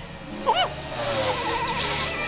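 A short squeaky cartoon-character vocal about half a second in. Then a steady rushing, scraping noise with a low rumble as sand is shoved and sprayed, under a wavering, warbling hum.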